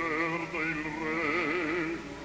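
Operatic bass voice singing held notes with a wide, even vibrato over an orchestra, in an old live opera broadcast recording.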